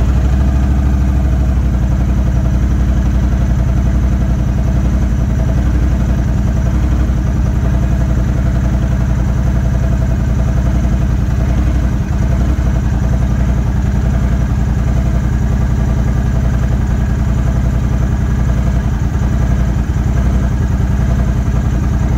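Honda Rebel 1100 DCT's parallel-twin engine idling steadily in neutral, just started, while its dual-clutch transmission relearns after a reset.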